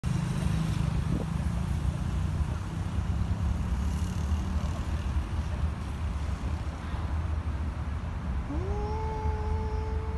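A steady low rumble throughout. About eight and a half seconds in comes a single drawn-out animal call that rises briefly, then holds one level pitch for nearly two seconds.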